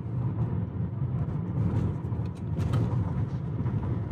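Steady road and tyre rumble inside the cabin of a Tesla electric car cruising at about 40 mph.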